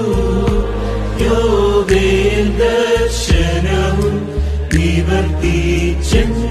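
Recorded Syrian Christian liturgical music, a Pentecost qolo: a held melody line over sustained bass notes that change every second or so, with a short percussion stroke about every second and a half.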